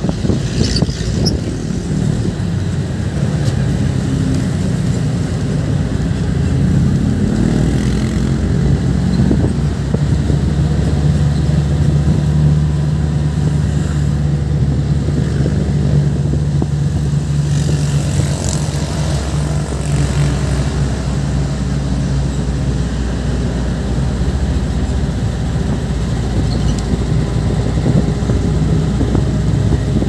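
Jeepney engine running under way, heard from inside the open-sided passenger cabin with wind and road noise. The engine note climbs about seven seconds in, then holds a steady hum for several seconds.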